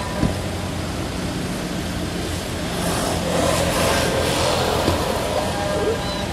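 A motor vehicle running nearby, its noise swelling as it passes about three to four seconds in, over a steady low hum. There is a short knock just after the start and another near the end.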